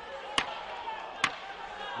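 Two sharp knocks about a second apart over a faint background murmur in the arena.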